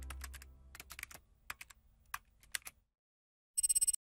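Keyboard-typing clicks as a sound effect, a dozen or so irregular keystrokes while the tail of a synth note fades out. After a short silence a brief, rapid buzzing rattle comes in near the end.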